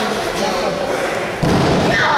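A heavy thud about one and a half seconds in, from a wrestler's body impact during a brawl outside the ring, with crowd voices around it.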